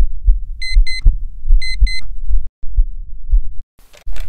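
Sound-design intro: a slow heartbeat of low thumps runs under two pairs of short, high electronic alarm-clock beeps in the first half. The heartbeat cuts out briefly twice, and just before the end a broad rustling noise comes in.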